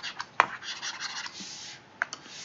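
A pen stylus tapping and rubbing on a tablet screen while handwriting is erased: a few taps, a sharp one about half a second in, then about a second of scratchy rubbing.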